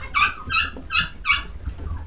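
English cocker spaniel puppy giving a quick run of about four short, high-pitched yips.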